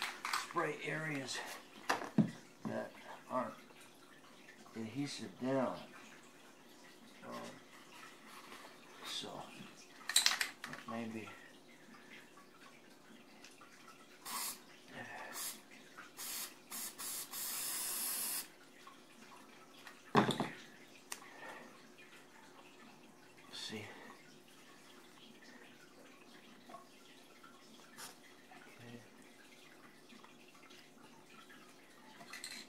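Aerosol can of spray adhesive hissing in one steady spray of about two seconds, a little past halfway through. Around it come a few sharp knocks of tools or the can on the floor, the loudest ones near a third and two-thirds of the way through.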